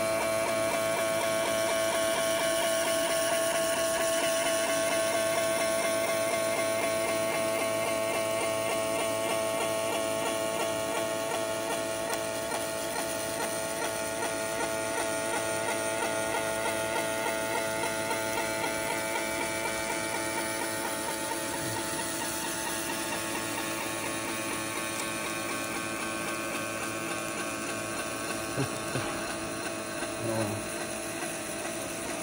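Laser engraving machine's scan head buzzing steadily with a fast, even pulsing while it etches a pattern into the backing paint of a mirror.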